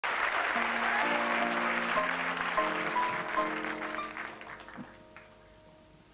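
Audience applause that dies away over the first four seconds or so, while an upright piano plays a few sustained chords.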